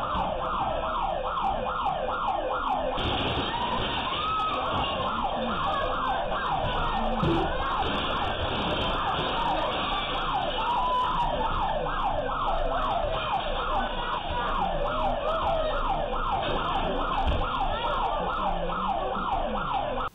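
Electronic alarm siren sounding in quick falling sweeps, two or three a second, steady throughout.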